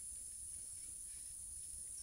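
Faint, steady high-pitched insect chorus, with a low rumble underneath.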